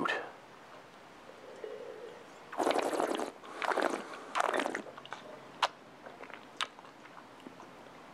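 A person slurping a mouthful of red wine, drawing air through it three times in quick succession to aerate it on the palate, followed by two small mouth clicks.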